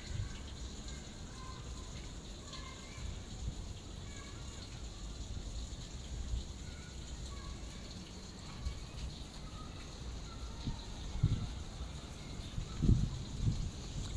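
Faint outdoor ambience: a steady low rumble with a few faint, short chirps scattered through it.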